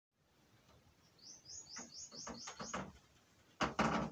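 A bird calling: a quick run of about eight short, high, rising chirps, evenly spaced. A loud bump and rustle follow near the end.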